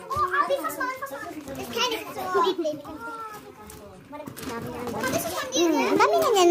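Several children's voices talking and calling over one another, with no single clear speaker.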